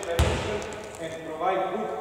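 A basketball bounced once on a hardwood court, a single sharp thud near the start, under a man speaking.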